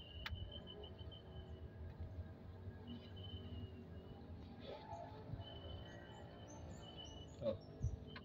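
Faint bird calls: several thin, steady whistles about a second long each, and a few short high chirps in the second half, over a low outdoor rumble.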